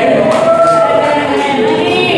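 Music with a group of voices singing together, several held notes overlapping.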